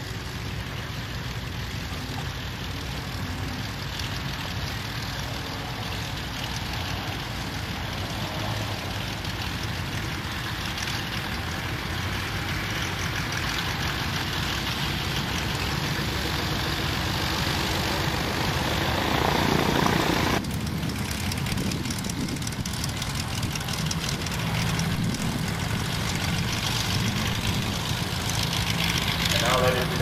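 Wittman Buttercup light airplane's piston engine and propeller running at taxi power, a steady low hum that grows gradually louder, with a sudden drop in level about two-thirds of the way through.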